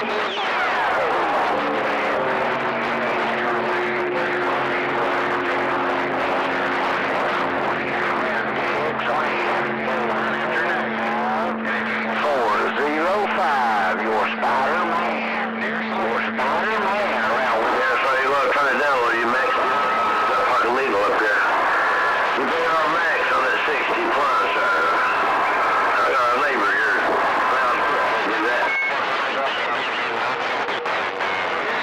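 CB radio receiving long-distance skip: a hissy channel with garbled, unintelligible voices overlapping and steady whistling tones, low-pitched for the first half and higher in the second half.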